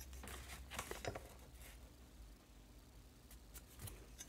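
Faint, scattered handling sounds: a metal L-square being moved and set down on a sheet of paper on a cutting mat, with light taps and paper rustles.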